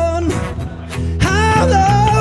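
Live acoustic guitar and bass guitar playing a song together, with a male voice holding a sung note that ends right at the start. After a brief instrumental gap, the singing comes back in about a second in.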